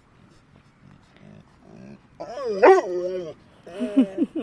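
A dog vocalising at another dog through a fence: one long call about two seconds in that rises and then falls in pitch, followed by a few shorter calls near the end.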